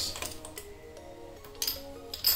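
Quiet background music with several held notes, and a light click about one and a half seconds in.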